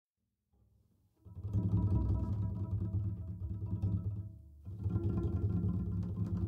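Acoustic double bass playing a low, dense free-improvised passage alone, coming in about a second in after silence and thinning briefly just before the five-second mark.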